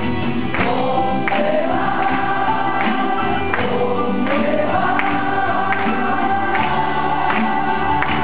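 Live band playing a song: strummed acoustic guitars, drums and keyboard with a steady beat, and several voices singing the melody together.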